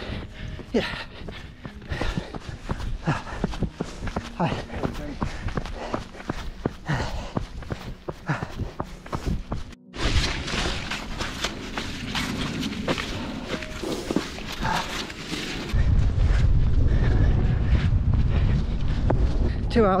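A runner's footsteps striking the trail at running pace, with a few spoken words. For the last few seconds, wind buffets the microphone in a heavy low rumble.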